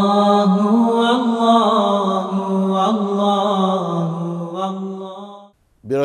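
A single voice chanting a religious melody in long, slowly gliding held notes. It fades out about five and a half seconds in.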